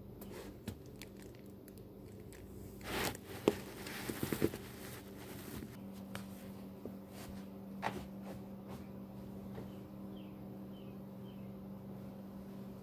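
Steady low hum of a Miller packaged air-conditioning unit heard through a register, with its low tone growing stronger about six seconds in. A cluster of rustling and clicking handling noises sounds about three to four and a half seconds in.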